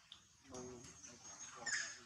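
Infant long-tailed macaque whimpering: a soft, wavering cry starting about half a second in, then a couple of sharp high squeaks near the end.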